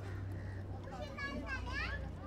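Children's voices chattering and calling out, with a high-pitched, sliding child's call in the second half. A steady low hum runs underneath.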